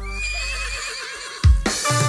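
Kecimol band music: a held keyboard chord and bass die away under a wavering high synth note, then a loud drum hit about one and a half seconds in starts the drum beat.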